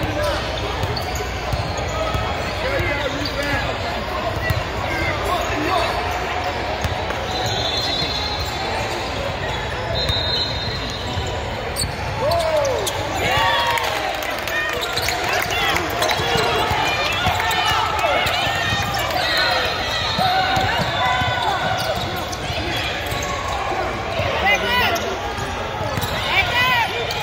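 Basketball game in a large gym: a ball bouncing on a hardwood court amid players and spectators calling out, echoing in the hall. Three short high-pitched tones stand out about eight, ten and twenty seconds in.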